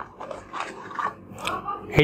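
Cardboard packaging scraping and crackling in irregular bursts as a pocket 3G Wi‑Fi router is slid out of its white inner box.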